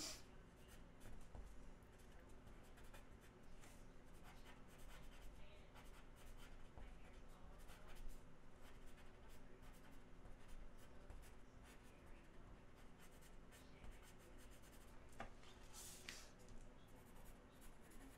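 Faint scratching of a blue pencil on an 11-by-17 illustration board, a run of quick, loose sketching strokes.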